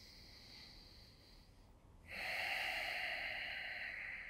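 A man breathing audibly close to the microphone while holding a yoga stretch: a faint breath, then a louder, longer breath starting about two seconds in.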